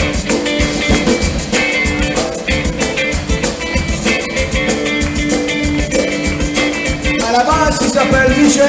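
Live band playing an upbeat Cajun/zydeco number on electric guitars and drums with a steady beat; a singing voice comes in near the end.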